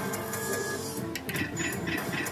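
Merkur Ghost Slider slot machine's electronic reel-spin sounds during a free game: a run of rapid clicks as the reels spin and stop, over the game's steady background tune.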